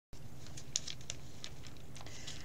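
Faint scattered light clicks, about six in two seconds, over a low steady hum.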